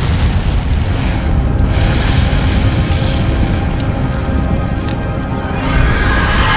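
Soundtrack of an animated channel intro: a continuous deep boom and rumble of fire-and-explosion effects mixed with music, swelling louder near the end.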